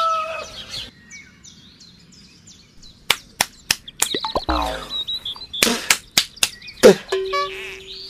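A held bird call fades out in the first half-second, then faint high chirping. From about three seconds in, a run of sharp clicks and knocks follows, mixed with short pitched cries.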